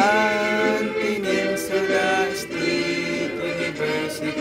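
A man singing a Filipino university hymn in a slow march style, holding each note for a second or so before moving to the next.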